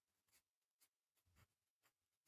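Very faint scratching of a pen writing on notebook paper, in a few short strokes.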